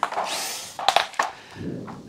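Makita nibbler cutting sheet metal: a brief burst of harsh, dense cutting noise, then a few sharp clicks and a quieter rumble near the end.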